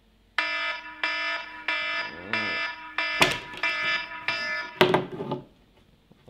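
Smartphone alarm going off: a buzzy beep repeating about every two-thirds of a second, joined from about halfway by sharp knocks and handling noise as the phone is grabbed.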